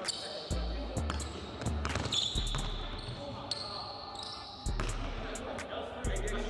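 Basketballs bouncing on a hardwood gym floor during pickup play, with repeated thuds and sneaker squeaks, echoing in a large gym.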